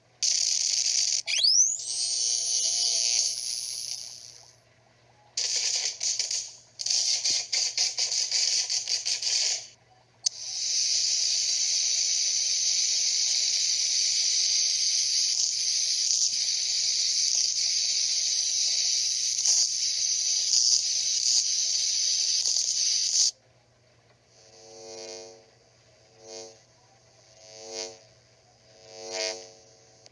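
Cartoon electrocution sound effect, heard through a phone speaker: loud crackling electric hiss in long bursts, with a rising whine about a second in, the longest burst lasting about thirteen seconds. Near the end come four short pitched pulses.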